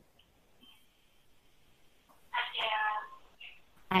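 A single brief high-pitched call, under a second long, about two and a half seconds in, coming faintly over the video call.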